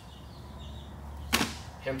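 A single sharp tap about a second and a half in, over a faint low hum.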